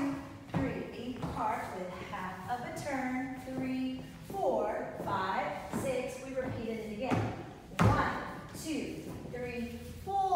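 A voice talking throughout, with a few thuds of dance shoes stepping or stamping on a wooden floor, the loudest near the end.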